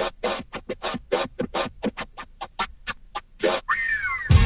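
Turntable scratching in a 1980s hip hop mix: a rapid run of short back-and-forth scratches with the drums and bass dropped out, ending in a brief gliding squeal near the end.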